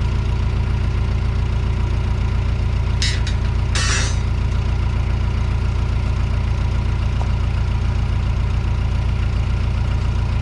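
A construction machine's engine idling with a steady, low drone, and two brief sharp noises about three and four seconds in.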